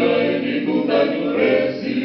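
Male vocal quartet singing a cappella in close harmony through microphones.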